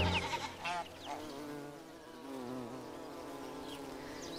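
Bumblebee buzzing, its drone wavering up and down in pitch as if the bee were flying around. The last piano chord dies away at the very start.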